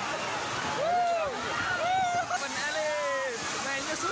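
A steady rush of heavy rain and strong wind, with people shouting and crying out over it.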